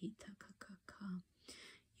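A soft, whispered voice uttering quick wordless syllables of channelled 'light language', with a breathy hiss near the end.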